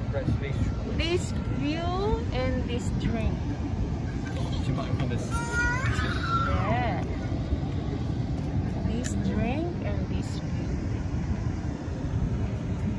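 Indistinct voices talking over a steady low rumble, with a higher-pitched voice about six seconds in.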